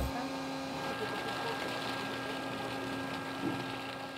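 Steady machinery hum with a few faint constant tones, from a research ship's deck machinery.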